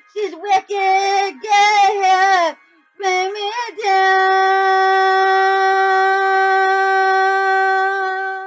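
A woman's solo singing voice: a few short sung phrases without clear words, a brief pause, then one long, steady belted note held from about four seconds in.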